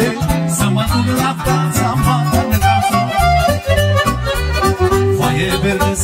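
Romanian lăutari taraf playing instrumental party music: a violin and accordion melody over a steady, even bass-and-rhythm accompaniment.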